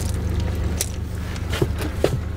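Boat's outboard motor running steadily at trolling speed, a low even hum, with a few light clicks and knocks from the deck.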